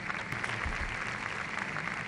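Large audience applauding, a steady dense patter of many hands clapping.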